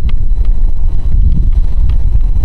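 Long Island Rail Road bi-level coach train rolling past, a loud, steady low rumble with wind buffeting the microphone.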